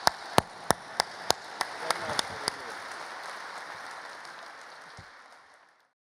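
Audience applauding, with loud single claps close to the microphone, about three a second, for the first two and a half seconds. The applause then thins and fades out near the end.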